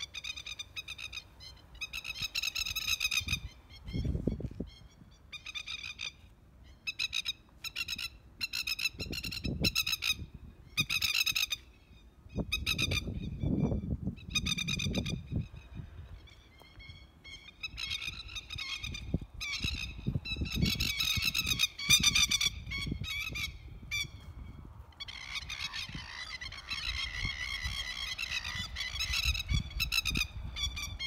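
Masked lapwings giving repeated bursts of alarm calls as they swoop at an intruder in defence of their territory, with a denser, longer bout of calling near the end.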